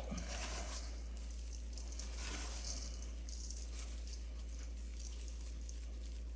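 Faint gritty rustling of coarse kosher salt being rubbed and pressed into a cut lemon by gloved hands, over a steady low hum.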